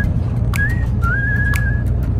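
Background music: a whistled tune holding long notes, over a light tick about once a second. A steady low rumble of a bus runs underneath.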